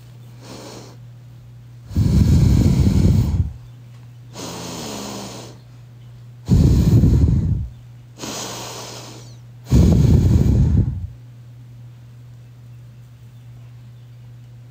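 A person snoring loudly: three rattling snores about four seconds apart, each followed by a quieter breathy exhale.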